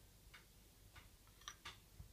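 Near silence with a few faint clicks of a metal spoon against a glass bowl as Nutella is scooped out.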